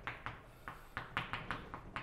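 Chalk writing on a blackboard: a string of short, irregular taps, about five a second, as the chalk strikes the board while letters and dots are written.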